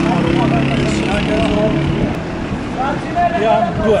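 Street traffic: a passing motor vehicle's engine runs low and steady for the first couple of seconds and then fades, with people talking over it.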